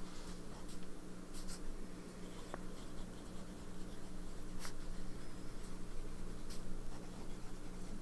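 A TWSBI Diamond 580 AL fountain pen with a medium nib writing on notebook paper, the nib scratching softly along the strokes, with a few short clicks, over a steady low hum.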